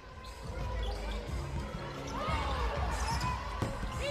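A basketball being dribbled on a hardwood court during live play, with players' voices calling out on the floor.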